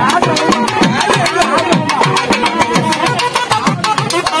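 Naiyandi melam band playing: a wavering nadaswaram melody over fast, steady thavil drumming.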